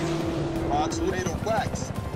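Film soundtrack of military helicopters flying through a thunderstorm: steady engine and storm noise with a held tone that stops about a second in, then short shouted voices.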